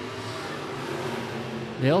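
IMCA sport modified dirt-track race cars running at speed past the grandstand, a steady engine noise that rises slightly toward the end.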